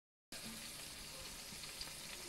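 Meat chops sizzling steadily in their fat in a metal pan in a hot oven; the sizzle starts about a third of a second in.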